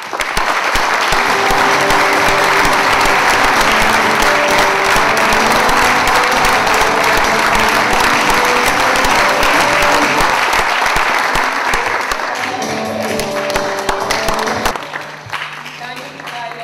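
Loud, sustained audience applause over played music. The clapping thins out after about twelve seconds, and the music stops sharply about fifteen seconds in, leaving scattered claps over a low hum.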